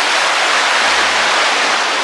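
Steady rush of shallow stream water flowing over rocks and around stepping stones.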